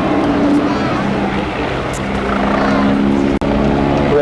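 Westland Wasp HAS1 helicopter flying overhead, its Rolls-Royce Nimbus turboshaft and rotor running with a steady droning tone that grows stronger about halfway through. The sound cuts out for an instant a little after three seconds in.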